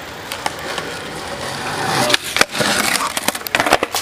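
Skateboard wheels rolling on concrete, growing louder, then about halfway through a harsh scrape against a concrete ledge followed by a run of sharp clacks as the board comes off and clatters away.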